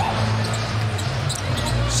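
Arena crowd noise during live basketball play, with the ball bouncing on the hardwood court.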